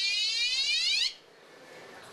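Electric bicycle's anti-theft alarm sounding: an electronic siren tone sweeping upward in pitch, which stops about a second in.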